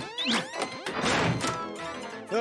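Cartoon sound effects of a door being barricaded: a bolt and a metal bar thunking into place, with gliding whooshes, over background music.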